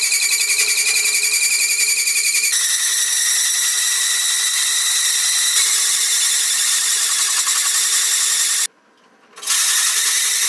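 An adjustable circle cutter (fly cutter) spinning in a drill press screeches loudly as its single tool bit cuts a hole through sheet metal, with a fast pulsing ripple. The screech stops suddenly near the end as the feed is backed off, then starts again for about a second.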